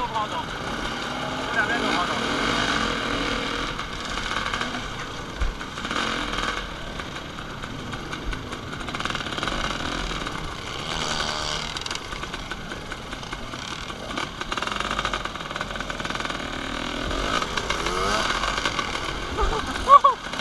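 Several dirt bike engines running at low speed and revving now and then as the bikes pick their way over rocks and through a shallow river.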